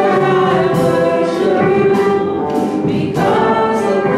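Two women singing a gospel song, holding long sustained notes.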